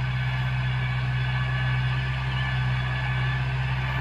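Iseki NT 548F tractor's diesel engine running steadily as it pulls a bed-forming implement through the field, a constant low drone.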